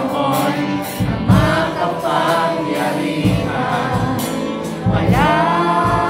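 Live worship music: many voices singing a gospel song together with a band, over a steady beat.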